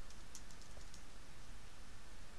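A few faint keystrokes on a computer keyboard, mostly in the first second, over a low steady background hum.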